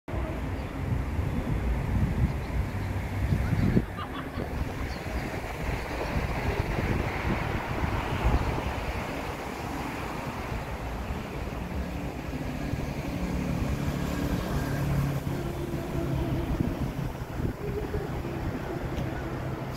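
Wind buffeting the microphone, heavy and gusty for the first four seconds and then cutting off, over a steady wash of outdoor street and traffic noise. A low steady hum joins in over the last few seconds.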